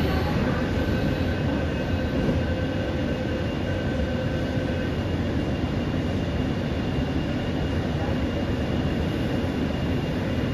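Steady interior noise of a Mumbai Metro MRS-1 car, with faint steady high tones over it; two of the tones fade out about halfway through.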